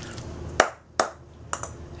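Metal spoon clinking against a stainless steel mixing bowl while stirring a thick cheese-and-mayonnaise spread: two sharp clinks about half a second apart, then a fainter tap.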